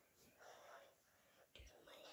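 Near silence with faint whispering, and a single soft click about one and a half seconds in.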